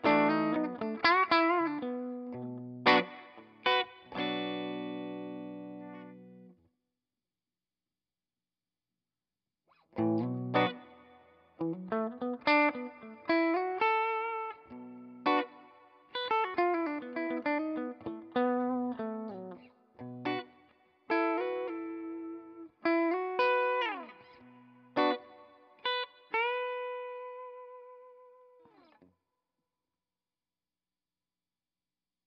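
Gibson ES-339 semi-hollow electric guitar played through a One Control Prussian Blue reverb pedal into a Marshall Bluesbreaker 1x12 combo: picked single-note lines and chords, each trailing a smooth reverb decay. The playing stops for about three seconds early on, then resumes, with a slide down the neck partway through and a last chord left to ring and fade near the end.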